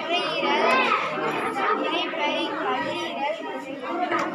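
Several children chattering at once, high voices talking over one another.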